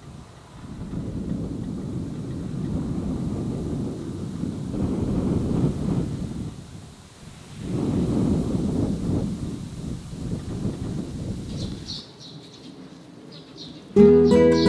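Wind buffeting the microphone over a barley field: a low rumble that swells and fades in two long gusts. After an edit near the end, birds chirp briefly.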